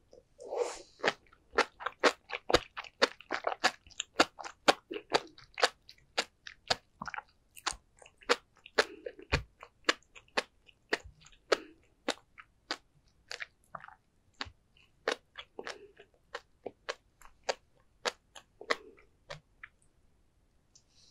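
Close-miked chewing of sea grapes and flying fish roe (tobiko), the little beads popping in a rapid run of sharp clicks, several a second, with soft wet mouth sounds between.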